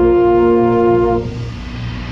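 Drum corps brass hornline, with a baritone right at the microphone, holding a loud sustained chord. The chord is released just over a second in, leaving a fainter noisy wash.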